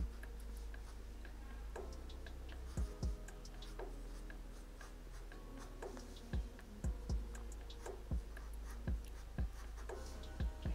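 Felt-tip marker pen drawing on paper: short, faint scratches of the tip as fine lines are inked, with a few low thumps.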